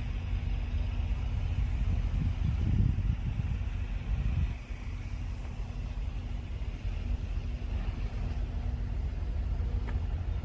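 Low steady rumble of a vehicle with a faint steady hum running through it, swelling for a couple of seconds about two seconds in, then settling back.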